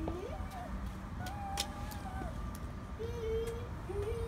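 A toddler's voice making a few drawn-out, gliding sounds as he climbs concrete stairs, with a few light taps and a low steady rumble underneath.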